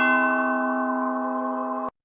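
Bell-like chime chord from a logo jingle, struck at the start and held as several steady ringing tones, then cut off abruptly just before the end.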